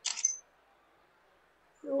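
A brief hissy click right at the start, then a stretch of dead silence, then a woman's voice coming in over a remote call line with "So" near the end.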